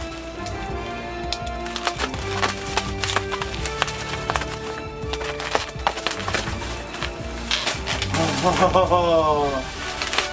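Plastic wrap and bubble wrap crackling and tearing in many sharp short bursts as it is pulled off a plastic display case. Background music with long held notes plays underneath.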